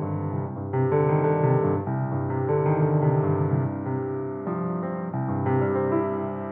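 August Förster 190 grand piano being played: full chords with deep bass notes, struck about once a second and each ringing on under the next.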